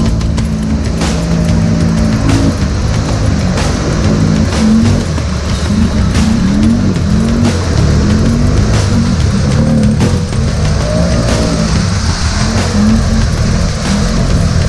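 Can-Am 570 ATV's V-twin engine revving up and down repeatedly as it churns through deep mud, with background music laid over it.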